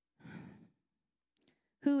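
A woman's breath taken close into a handheld microphone, about half a second long, followed by silence; her voice comes back in near the end.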